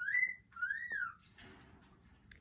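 Two short high whistle-like calls, each sliding up and then back down in pitch, about half a second apart, followed by a soft rustle.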